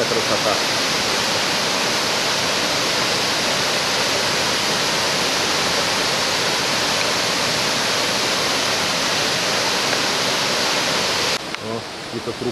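Jukankoski (Belye Mosty) waterfall: a steady, loud rush of water falling over the rock cascade. It cuts off suddenly near the end.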